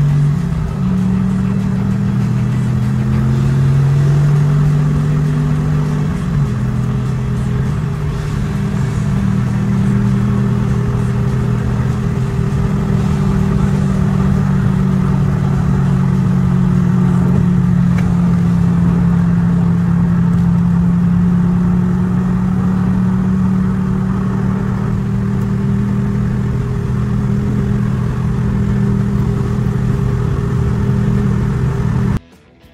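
Factory Five GTM's mid-mounted Corvette Z06 V8 heard from inside the cabin while driving. Its pitch steps up and down a few times in the first several seconds, then holds at a steady cruise.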